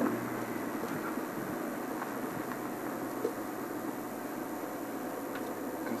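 Game-drive vehicle's engine running steadily: an even, unbroken noise with no separate knocks or calls.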